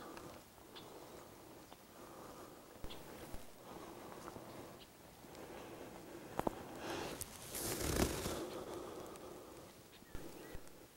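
Faint rustling of clothing and camera handling, with a few light clicks and a louder rustle about three-quarters of the way through.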